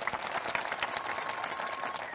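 Audience applauding: a steady patter of many hands clapping.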